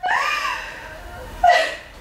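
A woman's drawn-out, laughing vocal sound, a stretched "I...", its pitch rising and then falling, followed by a short, sharper vocal sound about one and a half seconds in.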